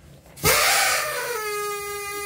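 Harmonica blown: a loud, rough blast starts about half a second in, then settles into one long held reedy note.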